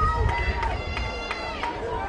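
Voices of football players calling out on the field before the snap, with a few short sharp clicks in the middle.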